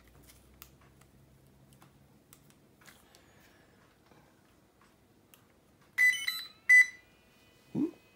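Brushless RC car's electronic speed control beeping as the battery is connected: a quick run of short high beeps about six seconds in, then one louder beep, the power-up signal of the speed control.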